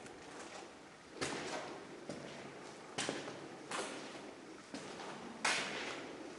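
Footsteps on a hard, gritty floor in an empty room: about five separate scuffing steps at uneven spacing, the last the loudest.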